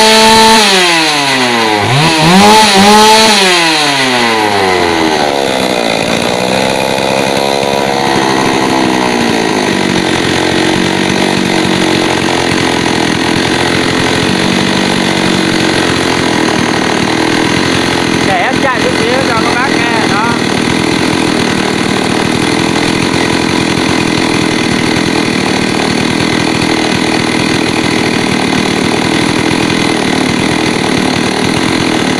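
Stihl MS 381 two-stroke chainsaw engine, freshly started, revved up and down a few times in the first several seconds, then settling to a steady idle.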